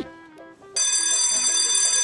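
School bell ringing as one steady tone that starts abruptly about three-quarters of a second in, signalling the end of class.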